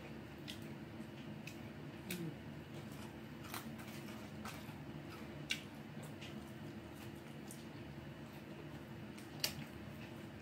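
Quiet mouth sounds of someone chewing French fries, with a few sharp wet clicks and smacks spread through, over a steady low hum.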